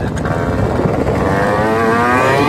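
Small moped engine pulling away, its pitch rising steadily as it speeds up, over a heavy rumble of wind on the phone's microphone.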